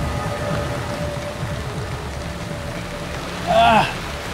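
Heavy rain pattering on a river's surface, a steady hiss, under a faint held music tone. Near the end a brief, loud voice-like cry rises and falls.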